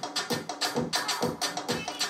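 Programmed Afro-electronic drum beat played back from music software: quick, even percussion hits with a kick drum, at about 130 beats a minute.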